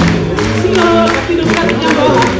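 Live band playing, with drums and electric guitars under singing voices and crowd voices, recorded from the audience.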